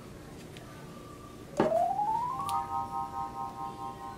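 An edited-in synthesizer sound effect: a sharp hit about one and a half seconds in, then a tone gliding up in pitch for about a second and settling into a held chord of several notes.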